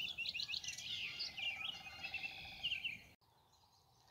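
Woodland songbirds chirping, with many quick high notes overlapping, until they cut off suddenly a little after three seconds in.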